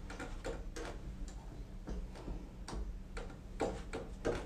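Plastic keys of a MIDI keyboard controller clacking as they are played: irregular taps, about three a second, over a low steady hum. The notes themselves go only to headphones, so no music is heard, only the key action.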